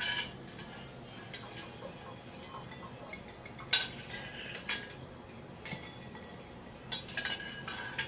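A metal spoon clinking against a saucepan as boiled eggs are scooped out to be moved into ice water: a few sharp clinks, the loudest a little under four seconds in, with a short run of them near the end.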